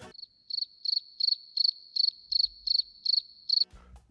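Cricket chirping: about ten short, even chirps on one high note, roughly three a second, over a silent background.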